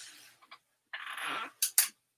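Clothes being hung on a rack: fabric rustling and hangers sliding along the rail, ending in two sharp clacks of plastic hangers knocking together near the end.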